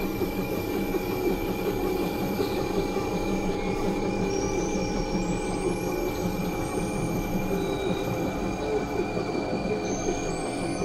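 Experimental synthesizer drone: a dense, steady mass of sustained tones with a grinding, industrial edge, joined from about four seconds in by short rising high glides.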